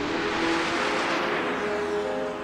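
Jet chase plane flying past at low level, a rushing jet noise that swells to its loudest about a second in and then fades away.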